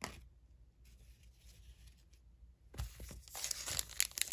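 Foil trading-card pack wrapper crinkling and tearing as it is gripped and ripped open. It starts a little under three seconds in and grows denser toward the end.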